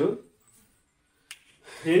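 A man's speech trails off, then after a pause a single short, sharp click, just before he speaks again.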